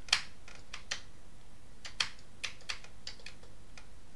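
Keys being pressed on a Commodore 128's mechanical keyboard: about a dozen separate clicks at uneven spacing, as the Escape X combination for switching between 40- and 80-column mode is tried.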